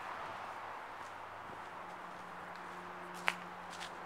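Steady outdoor background noise. A low, steady hum comes in about halfway through, and there is a single sharp click near the end.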